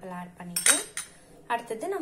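A single sharp clink of a metal spoon striking a stainless-steel bowl, a little past a half second in.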